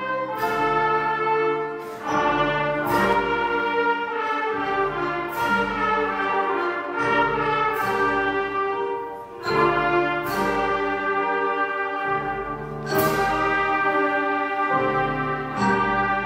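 School wind band of flutes and brass playing a piece together under a conductor, with several sharp accented strokes through it.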